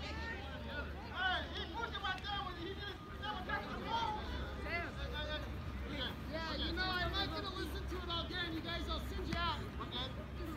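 Many voices talking and calling at once, overlapping into a babble with no clear words.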